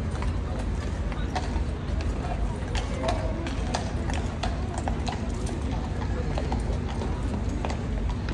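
Several horses' hooves clip-clopping at a walk, an irregular patter of hoof strikes.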